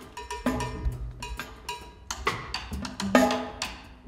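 Live free-improvised jazz from a quartet: irregular, sharp percussive strikes, with piano notes and low double-bass notes, and no steady beat.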